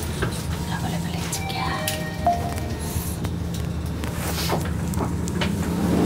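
Steady low hum inside a Mitsubishi elevator car, with a few short faint tones about two seconds in.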